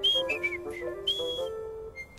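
A man whistling a few short high notes, some sliding down in pitch, over light cartoon background music.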